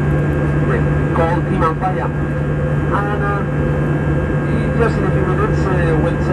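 Airbus A320 cabin noise in cruise: a steady drone of the jet engines and airflow with a constant low hum, unchanging throughout.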